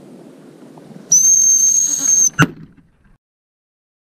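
Gundog whistle blown in one long, steady, high-pitched blast of about a second. It is followed by a single sharp crack, after which the sound cuts out.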